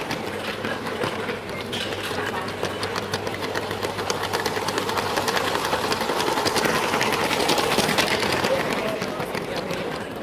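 A Lego train's small electric motor whirring as it runs along plastic track, heard close from on board, with a fast, rattling clatter of wheels over the track.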